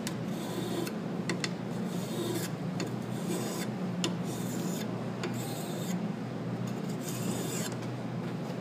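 Water-wetted sharpening stone rasping along the bevelled edge of a steel hedge-shear blade in repeated, uneven strokes, sharpening the edge.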